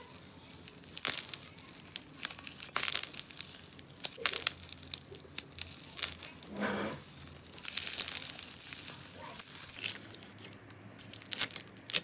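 Hands tearing and squeezing balls of foamy slime, giving a series of sharp, irregular crackling pops.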